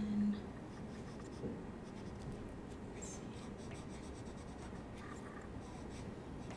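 Felt-tip marker being stroked back and forth over tracing paper to blend colour: a faint, dry scratching of short repeated strokes.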